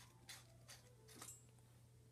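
Near silence broken by a few faint plastic scrapes and clicks from the screw-on battery cap at the bottom of a Caframo Tiny Tornado fan being twisted off by hand.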